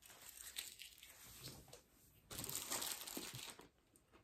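Foil candy wrapper crinkling in the hand, faint at first, with a louder stretch of crinkling past the middle.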